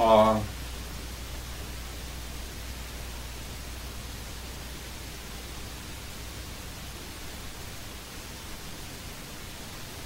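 A short spoken syllable at the start, then a steady hiss with a low hum underneath: the noise floor of an old videotape recording of a quiet room.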